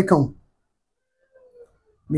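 A man's voice trailing off at the end of a phrase, then near silence broken only by one faint, short tone about a second and a half in.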